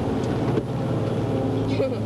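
Station wagon's engine droning steadily with low road rumble, heard from inside the car's cabin on a newly graded back road.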